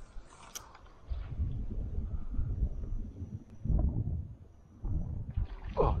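Wind rumbling on the microphone in uneven gusts, with a single sharp click about half a second in.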